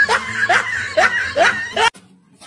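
A man laughing in about five short, rhythmic 'ha' bursts, each rising in pitch, that cut off suddenly near the end.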